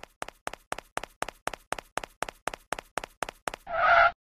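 Cartoon footstep sound effect: quick, evenly spaced light taps, about four a second, growing louder, followed near the end by a short pitched blip.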